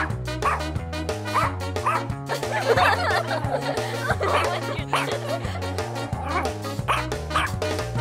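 Background music with a steady beat, with a dog barking and yipping several times in the middle.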